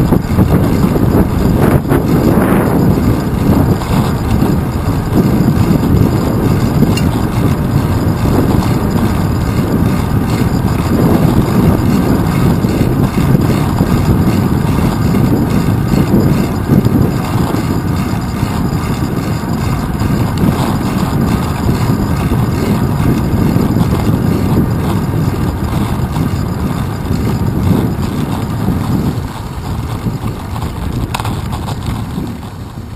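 Wind buffeting and road rumble on a handlebar-mounted GoPro Hero 2 while cycling through city traffic: a loud, steady, low rumble.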